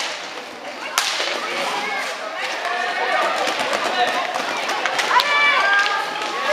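Rink hockey play: sharp cracks of a stick striking the hard ball, one about a second in and another near the five-second mark, over the rolling and scraping of skates and players' calls in the hall.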